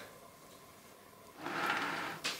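A short scraping rub about a second and a half in, after a near-quiet pause: a heavy fossil-bearing rock block being turned on the tabletop.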